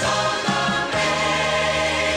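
Gospel choir music: voices singing long held notes over accompaniment, moving to a new chord about a second in.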